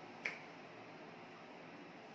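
A single short, sharp click about a quarter of a second in, over a steady faint hiss.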